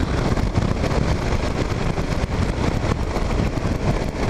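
Kawasaki KLR 650's single-cylinder engine running at a steady cruise, mixed with wind rush on the camera microphone as the motorcycle rides along.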